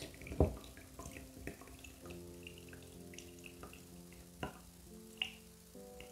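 Water pouring in a thin trickle from an izybaby portable bottle warmer into a baby bottle, with drips and a few small knocks.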